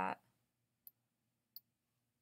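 Two short computer mouse clicks, a little under a second apart, over quiet room tone.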